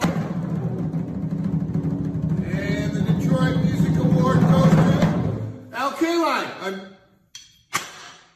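A drum roll played with drumsticks on a single drum: rapid strokes swelling in loudness for about five seconds, then stopping. It is a suspense roll before an announcement. A man's voice follows near the end.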